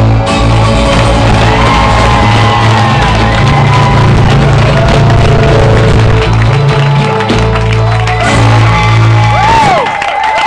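Live rock band playing loudly, with guitar and drum kit over steady sustained low notes. The song stops just before the end, and the crowd starts cheering and whistling.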